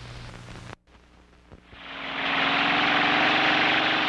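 A dune buggy's engine running steadily. It comes in about two seconds in, after a short gap of near silence.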